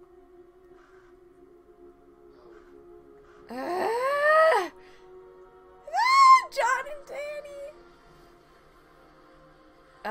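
Low sustained music drone, broken by two loud high wailing cries: one that rises and then falls about three and a half seconds in, and a sharper, higher shriek about six seconds in, trailing off in a few shorter calls.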